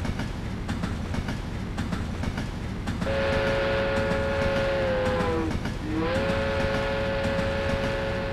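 A train running with a steady low rumble. About three seconds in, a long multi-tone horn blast starts; its pitch sags and it breaks off briefly near the middle, then it comes back and holds.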